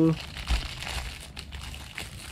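Clear plastic packaging crinkling as hands rummage in it and pull a small jar out, with a dull bump about half a second in.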